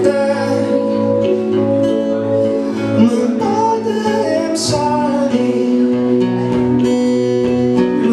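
A man singing to his own strummed acoustic guitar, played live.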